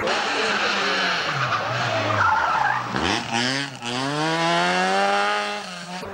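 Rally car engine at full race pitch: it comes off the throttle with the pitch falling, then accelerates hard with the pitch rising steadily.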